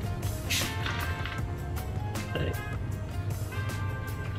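Soda water poured from a plastic bottle over ice in a tall glass, under background music with a steady beat.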